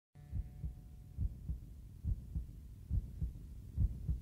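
Heartbeat sound: slow, steady lub-dub double thumps at about 70 beats a minute, with a faint held tone that fades away in the first second.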